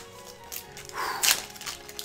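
Foil Yu-Gi-Oh booster pack wrapper crinkling and tearing open, with a short rip about a second in, over quiet background music.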